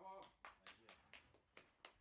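Near silence: room tone in a pause between announcements, with a few faint, scattered clicks.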